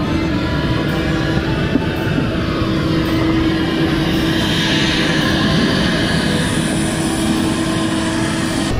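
Steady running noise of a parked jet airliner heard from its open door and stairs: a constant rumble and hiss with a steady hum running through it.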